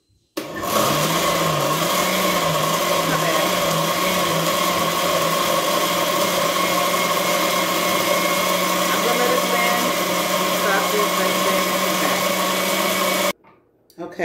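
Countertop blender running at full speed, blending chopped soaked sea moss and water into a gel. It starts suddenly just after the beginning, its motor hum wavers for the first few seconds and then holds steady, and it cuts off abruptly near the end.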